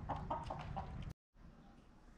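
Rooster clucking in a quick run of short calls that cut off abruptly about a second in, leaving only faint room tone.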